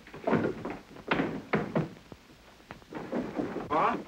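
Footsteps coming down a wooden staircase in a few separate heavy steps, then a short voice near the end.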